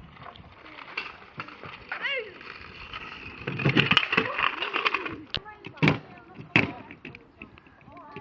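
Kick scooters clattering on tarmac and a small ramp, with three sharp knocks a little past halfway, under children's voices.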